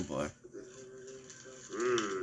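A man's voice making drawn-out 'mmm' hums: a loud one sliding down in pitch at the start, a quieter held hum through the middle, and another rising near the end.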